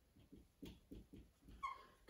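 Dry-erase marker writing on a whiteboard: a string of faint, short strokes, with a brief squeak near the end.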